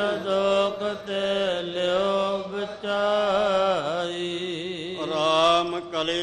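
A man's voice chanting Sikh scripture (Gurbani) in long, wavering held notes over a steady low tone, with short breaks between phrases.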